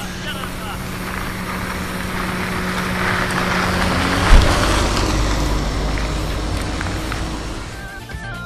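A motor vehicle passing close by, growing louder to a peak about halfway through and then fading, with a sharp low thump at its loudest point. Faint voices are underneath.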